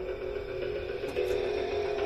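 Light clicks from a small oval TV speaker's metal frame being handled and turned over in the hand, over a steady background tone.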